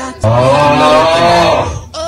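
A loud, long, low moo like a cow's, lasting about a second and a half, its pitch wavering and then dropping as it ends.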